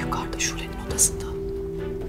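A woman speaking in Turkish over background music of steady held tones, with a sharp hiss about a second in.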